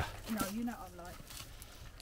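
A woman's voice, brief and quiet, a murmur without clear words in the first second, then only low background.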